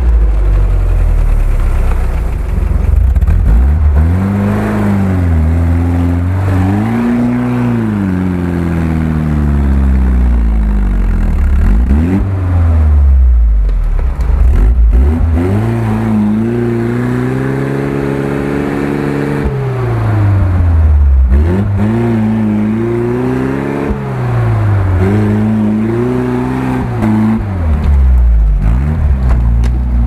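Engine of a small off-road 4x4 revving up and down under load as it climbs out of a muddy stream gully. The revs rise and fall every few seconds, with long pulls about midway and again near the end.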